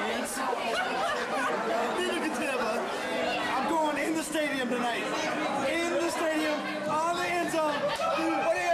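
Chatter of many people talking over one another in a crowded restaurant, with one man's voice close by.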